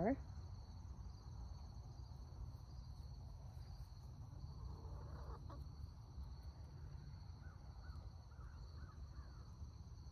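Quiet rural ambience: a steady, high, pulsing chorus of insects such as crickets, over a low steady rumble. A few faint soft calls come near the end.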